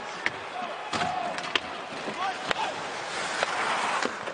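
Live ice hockey game sound: a steady crowd murmur, with about five sharp clicks and knocks of sticks and puck on the ice spread through it.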